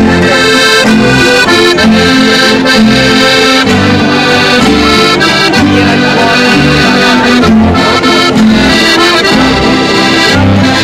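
Accordion playing a traditional folk tune, its bass notes keeping a steady beat.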